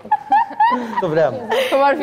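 A man chuckling in short bursts of laughter, mixed with speech.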